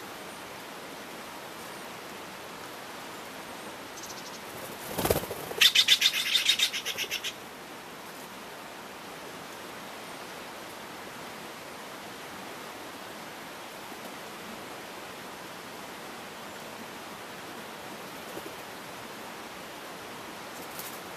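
A Steller's jay gives a rapid run of about ten notes lasting a second and a half, about six seconds in, just after a brief whoosh. A steady faint hiss lies underneath.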